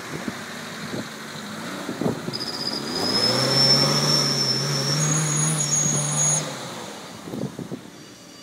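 Daihatsu Feroza 4x4's four-cylinder engine revving hard under load as it climbs a steep dirt bank, the tyres spinning in loose dirt. The revs rise about three seconds in, hold for about three seconds with a high steady whine above them, then drop away.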